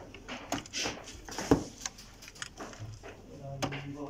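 Scattered small plastic clicks and knocks as flat ribbon cables are worked loose from their connectors inside an Epson LQ-310 dot matrix printer, with one sharper knock a bit over a third of the way in.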